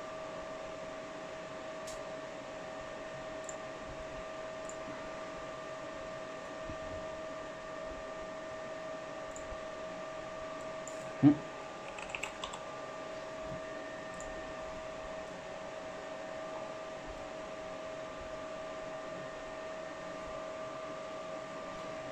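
Steady whirring hum of a running multi-GPU mining rig, with a constant whine in it, and a few short keyboard clicks around the middle as overclock values are typed in.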